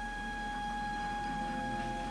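Film soundtrack playing from a television: a single high note held steady in pitch, with lower notes joining about halfway, over a faint low mains hum.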